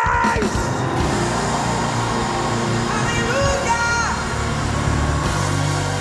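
Live church band (keyboard, bass and drums) playing a steady, bass-heavy accompaniment in a praise break. A voice rises over it in one short phrase about three seconds in.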